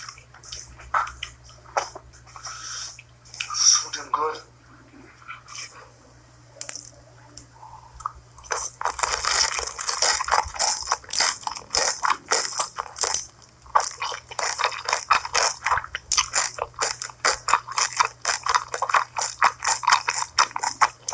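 Close-miked ASMR eating: dense, crisp crackling chewing and mouth sounds as pan-fried dumplings are bitten and chewed, starting about eight seconds in. Before that, only scattered quiet smacks and a few short vocal sounds.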